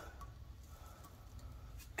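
Quiet room tone with faint handling noise and a couple of soft clicks near the end.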